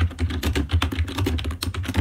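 Typing on a computer keyboard: a quick run of key clicks.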